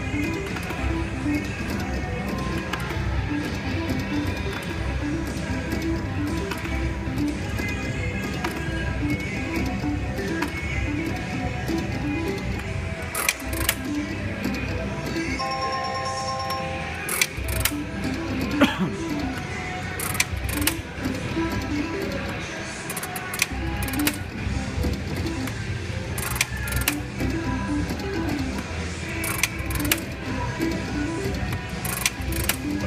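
Heatwave slot machine's reel-spin tune repeating as the reels spin game after game, with scattered clicks. About halfway through comes a short chime of several held tones, as a small win pays.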